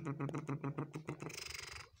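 A man's low, creaky-voiced hum, pulsing about a dozen times a second, followed near the end by a short breathy hiss.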